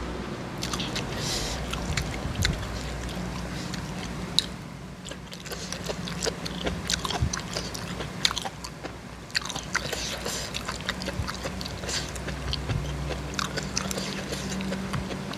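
A person eating som tam (spicy papaya salad) with soft rice noodles close to the microphone: steady chewing with many small wet mouth clicks and smacks, and now and then a crunch.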